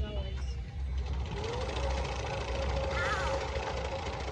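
Alpine coaster sled running along its steel tube rail: a low rumble with a whine that rises in pitch about a second and a half in, then holds steady as the sled comes in toward the camera.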